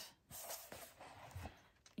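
Faint rustle of paper as the pages of a softcover coloring book are turned by hand.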